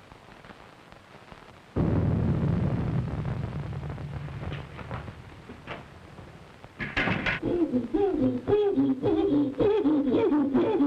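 A thunderclap about two seconds in, a sudden low rumble that fades away over several seconds. From about seven seconds, a caged ape gives a run of hooting calls that rise and fall in pitch, again and again.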